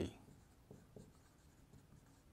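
Faint scratching of a dry-erase marker writing on a whiteboard, in a few short strokes.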